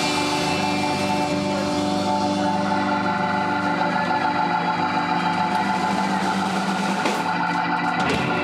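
Live blues band holding one long sustained chord to end the song, with an organ-voiced electronic keyboard prominent alongside electric guitar.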